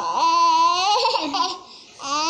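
A high-pitched voice held on one note for about a second, then sliding upward and breaking off shortly before the end.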